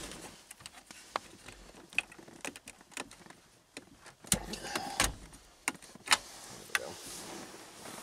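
Car stereo head unit's metal chassis being pulled out of a dashboard: scattered clicks, knocks and scraping of metal against plastic trim, with the loudest clunks about four to five seconds in.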